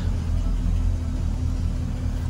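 Chevrolet Caprice's engine idling steadily, a low even rumble heard from inside the car.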